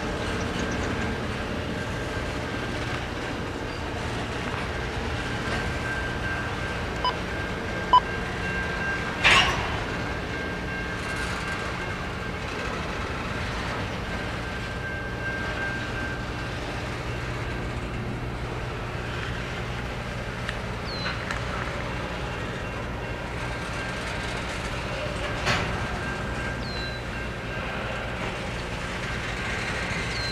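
Double-stack intermodal container train rolling steadily past: a continuous rumble of steel wheels on rail. A few sharp clanks stand out, the loudest about eight to nine seconds in and another near twenty-five seconds.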